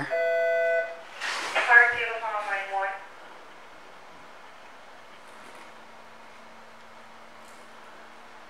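A steady electronic tone lasting just under a second, then a brief wordless voice sound, then faint steady room hiss.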